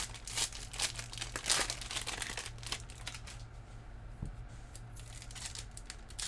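Foil trading-card pack wrappers crinkling and crackling as the packs are handled and torn open. The crackling is dense at first, thins out in the middle and picks up again near the end.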